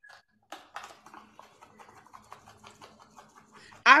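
Faint, irregular little ticks and rattles of parsley being shaken out of a small container onto a flatbread.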